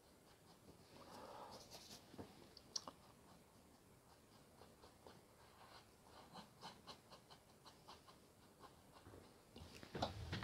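Faint brush work: a paintbrush mixing oil paint on a palette and then dabbing and stroking it onto canvas, soft scratchy strokes with a few light ticks and one small click.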